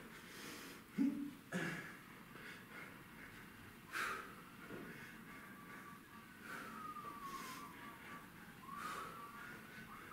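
Faint ambulance siren, its wail sliding slowly down in pitch and rising again near the end. A man doing sit-ups gives a few short, hard exhales, about a second in and again at four seconds.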